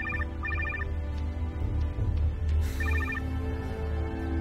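Mobile phone ringing: two short trilling rings close together at the start and a third about three seconds in. Under it, background music with a deep low drone.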